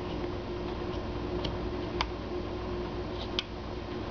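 Carving knife trimming wood on a small hand-held figure: three light, sharp clicks of the blade on the wood, over a steady faint hum.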